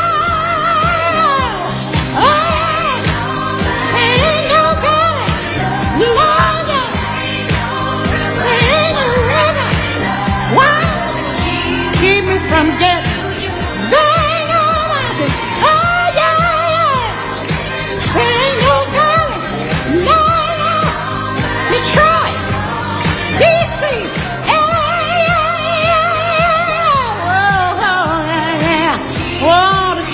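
A recorded soul-jazz song: a singer's voice in long phrases, holding notes with vibrato over a band's accompaniment.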